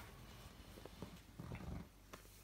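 Puppy growling faintly in short bursts while tugging at a red fabric toy.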